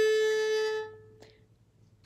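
Violin's open A string bowed as one long held note, fading out about a second and a half in.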